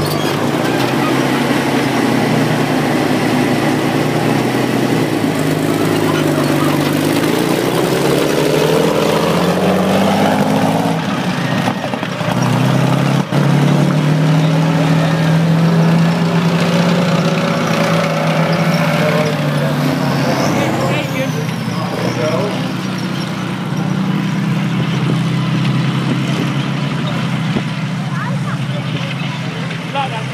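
Engines of vintage military vehicles driving slowly past one after another on grass. The pitch climbs and falls about a third of the way in, then holds a steady drone.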